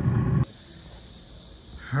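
Low rumbling roar of a pellet grill's burn-pot fire, cut off abruptly about half a second in. It leaves a faint background with a steady high hiss.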